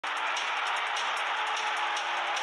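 Channel intro: music under a steady wash of stadium crowd noise.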